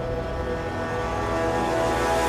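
Dramatic background music: a sustained, droning chord over a low rumble, swelling slightly louder near the end.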